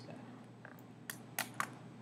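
A few light desk-top clicks: a faint one, then three sharp clicks close together a little past a second in, over a steady low hum.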